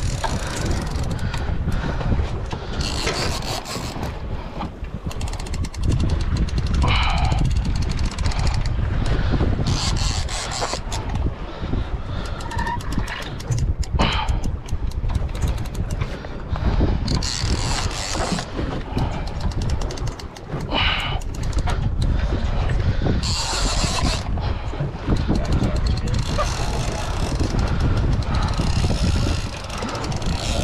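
Wind rumbling steadily on the microphone over open sea. About every six or seven seconds comes a second-long burst of a fishing reel being cranked under the load of a hooked sand tiger shark.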